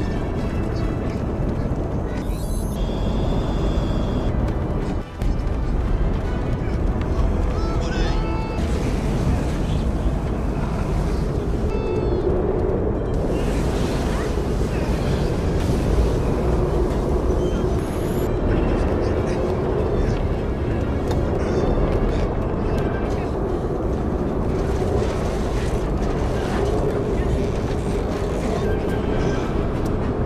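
Film soundtrack: music over a continuous low rumble and action sound effects, with a brief cut in the sound about five seconds in.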